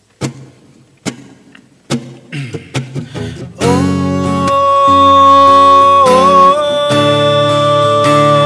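Takamine acoustic guitar starting a slow song intro with a few single picked notes. About three and a half seconds in, fuller, louder music comes in with a long held melody line over sustained chords.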